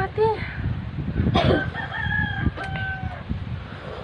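A rooster crowing once: one long call that begins about a second and a half in and ends a little after three seconds.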